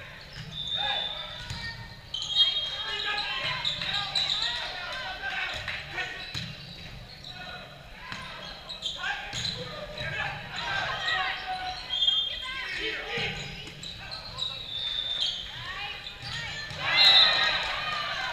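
Indoor volleyball rally in a large, echoing gym: the ball struck and bouncing, sneakers squeaking on the court, and players calling out, with a loud burst of shouting near the end as the point finishes.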